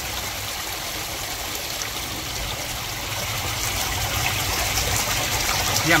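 Steady rush of water trickling and splashing in koi pond filtration, growing slightly louder toward the end.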